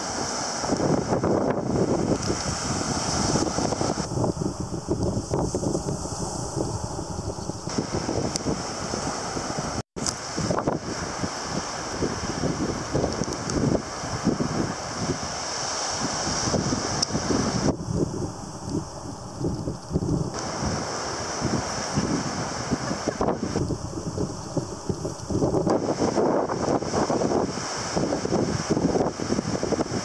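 Strong wind buffeting the microphone in gusts over the steady wash of surf breaking on a sandy beach. The sound drops out for an instant about ten seconds in.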